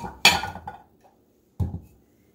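Small bowls handled and set down on a wooden countertop: a short clatter a quarter second in, then a dull thump about a second and a half in.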